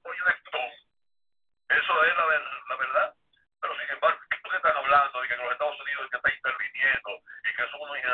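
Speech heard over a telephone line, with the thin, narrow sound of a phone call, broken by two short pauses in the first few seconds.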